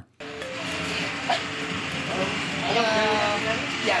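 Steady hiss of road traffic, with people talking faintly over it; it cuts in after a brief silence right at the start.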